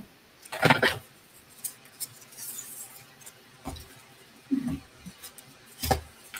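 Craft supplies handled on a tabletop: a roll of glue dots and a pen-like craft tool picked up and set down, giving scattered light clicks and taps, with a brief rustle just under a second in and a sharper knock just before the end.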